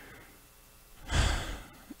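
Low room tone, then about a second in a man's breath close to the microphone, lasting about half a second.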